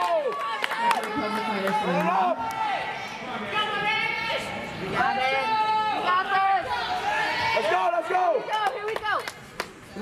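Spectators and corner coaches shouting and cheering over one another in a large hall, with a few sharp smacks scattered through.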